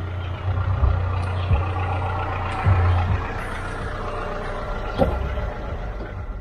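A car's engine running as the car pulls away and drives off. The low rumble is strongest for the first three seconds or so and then weakens as the car moves away.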